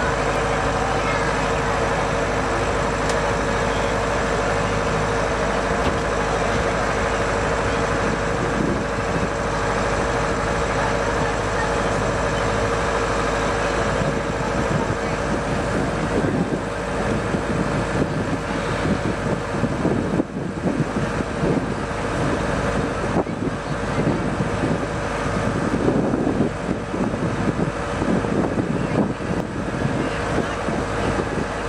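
A truck-mounted engine running steadily with a constant hum, with voices in the background and rougher, uneven noise from about halfway.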